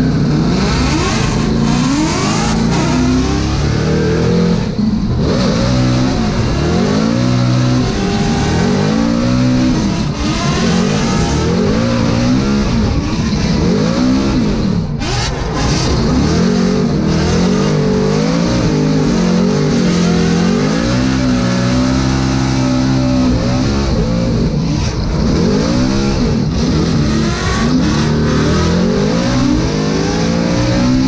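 Ford Mustang RTR drift car's V8 engine heard from inside the cabin, revving hard and constantly rising and falling in pitch under throttle through a drift run. There is a brief lift about halfway through.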